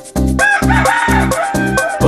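Dance-song music with a steady beat of about four kick-drum thumps a second. About half a second in, a rooster-crow sound rises in and is held for over a second on top of the beat.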